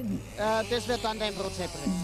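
A voice speaking quietly, over a faint steady low hum.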